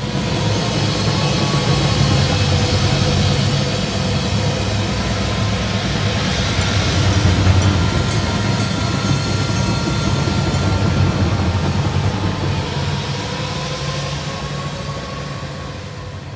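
A massed percussion ensemble playing a loud, dense, sustained wash of sound: a deep rumble underneath, a hiss-like haze on top, and a few slowly gliding tones weaving through the middle. It eases off toward the end.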